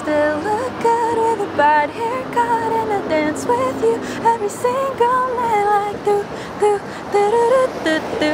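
A young woman singing a pop melody in short stepped phrases, one voice carrying the tune, with a low held tone beneath it that slowly sinks and fades about halfway through.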